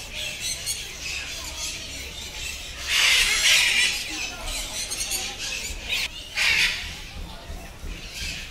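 Captive parrots screeching harshly, in repeated calls, the longest and loudest about three seconds in and another just after six seconds.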